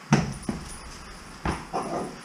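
Dog barking a few times in short, sharp bursts, the first the loudest.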